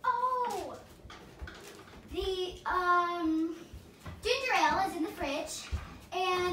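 A young girl's wordless singing in three short phrases, with long held notes.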